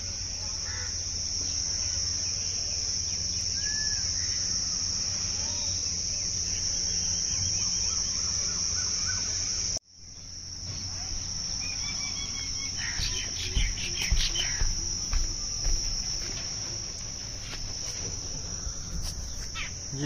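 A steady, high-pitched insect chorus, typical of crickets, that drops out briefly about ten seconds in and then resumes. A low rumble runs underneath, and a few knocks and thumps come in the second half.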